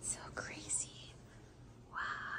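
A faint whispered voice in the first second, then quiet room tone.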